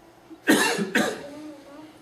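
A person coughing twice, about half a second apart, with a faint voice in the background.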